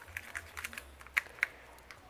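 Salt shaker with a metal top shaken over a small plastic cup, giving soft, irregular ticks and clicks.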